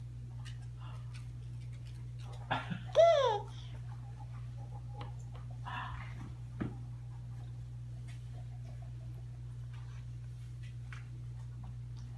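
A baby's single high-pitched squeal, falling in pitch, about three seconds in, over a steady low hum with a few faint clicks; a shorter, softer vocal sound follows near six seconds.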